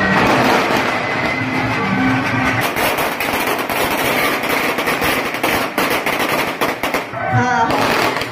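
A long string of firecrackers going off in a rapid, continuous crackle of many small bangs, densest in the middle and stopping shortly before the end, where voices take over.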